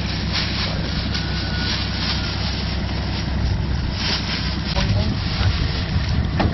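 A vehicle engine idling steadily with a low drone, with wind buffeting the microphone.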